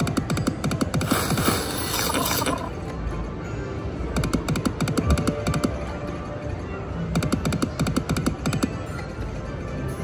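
Cluck Cluck Cash video slot machine spinning three times, each spin a burst of rapid electronic ticking and jingling a few seconds long, over a steady bed of electronic game music.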